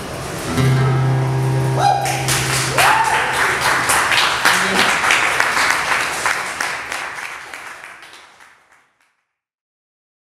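Acoustic guitar's final strummed chord ringing out, followed about two seconds in by audience clapping with a rising whoop, all fading out to silence near the end.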